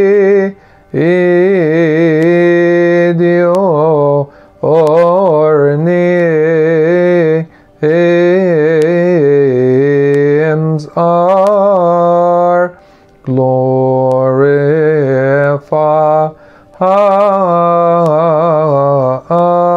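A man singing a Coptic hymn solo, in long melismatic phrases with wavering held notes, broken by short pauses for breath about every three to four seconds.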